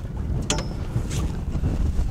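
Strong wind buffeting the microphone in open water, a dense low rumble, with a single sharp click about half a second in.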